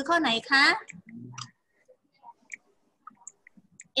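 A few faint, scattered clicks of a computer mouse, coming after a short spoken question.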